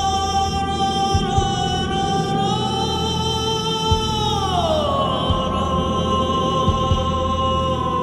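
Slow music with a single long held melodic note that glides down partway through and settles on a lower pitch. It sits over a low sustained drone, with a few soft low thuds scattered through.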